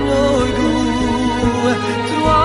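Male vocalist singing a pop melody through a microphone over instrumental backing, holding long, wavering notes above a pulsing bass line.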